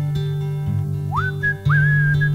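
Acoustic guitar picking a song intro. About a second in, a whistled melody comes in over it: two notes that each swoop up and then hold.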